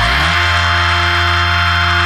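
Heavy metal band playing live, the distorted guitars and bass holding one sustained chord after a short downward slide at the start, with no singing over it.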